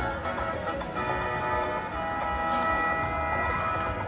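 Music playing over a public-address loudspeaker, with long held tones from about a second in.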